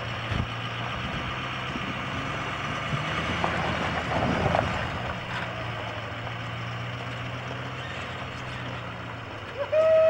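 Pickup truck engine running steadily at low speed while towing a travel trailer, a steady low hum.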